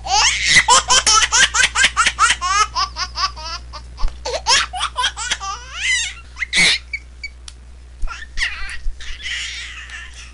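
A baby laughing hard: a fast run of high-pitched giggles, about four or five a second, for the first four seconds or so, then slower, scattered laughs that thin out toward the end. A low steady hum runs underneath.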